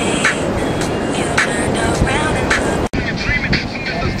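Strong wind buffeting the microphone on an open beach, a loud, unbroken rumbling rush. It briefly drops out just before three seconds in.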